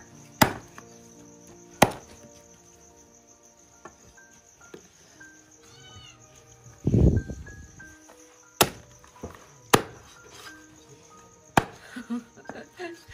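Meat cleaver chopping boiled chicken on a thick round wooden chopping block: five sharp chops, two in the first two seconds and three in the last four. There is a duller, longer knock about seven seconds in.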